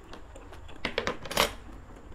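A metal fork clinking against a bowl, a quick cluster of sharp clicks about a second in.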